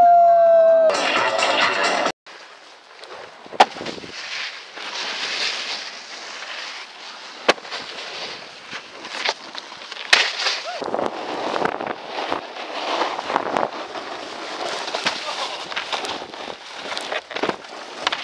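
A man's long, loud yell with wind rushing past as he leans out of a moving car's sunroof, cut off suddenly about two seconds in. Then snowboards scraping and sliding over packed snow, with wind hiss on the microphone and sharp knocks here and there.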